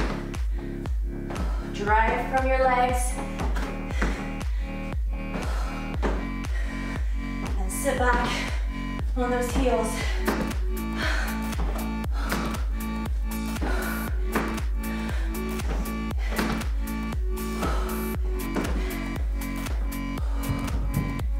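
Background electronic dance music with a steady, even beat, and a voice heard briefly twice.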